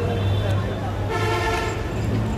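A vehicle horn sounds once, a steady note lasting just under a second, about a second in, over street traffic noise with a low steady hum.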